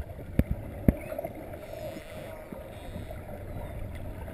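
Underwater sound from a camera held below the surface: a steady low rumble of moving water, with three sharp knocks in the first second.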